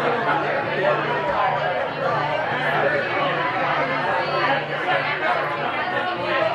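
Crowd chatter: many people talking at once in a packed bar room, a steady babble of overlapping voices.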